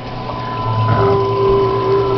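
Reef aquarium's pump and circulating water running: a steady hum under water noise, with a second steady tone joining about halfway through.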